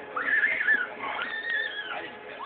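Two long whistled notes, each gliding up and then sinking slowly, the first wavering in pitch.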